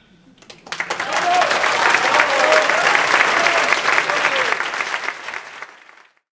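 Theatre audience applauding, with a few voices calling out, starting about half a second in, right after the tenor's final note, and dying away near the end.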